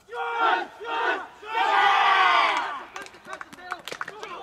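A high school football team's huddle shout: two short called shouts, then one long, loud shout of many voices together.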